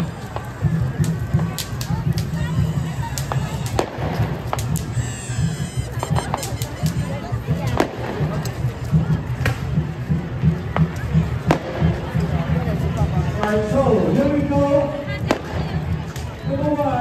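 Scattered firecracker pops, sharp and irregular, over a crowd's hubbub and a dense low rumble, with voices rising near the end.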